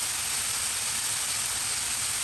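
Thin-sliced fatty beef sizzling steadily as it fries in an iron pan.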